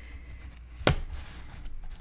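Card-stock pages and flaps of a handmade paper mini album being handled and turned over, with faint rustling and one sharp tap a little under a second in as a panel comes down.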